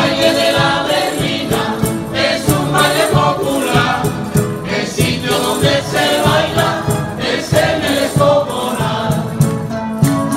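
Canarian folk group singing a berlina together in chorus, accompanied by strummed guitars, timples and twelve-string lutes (laúdes), with a drum beating time.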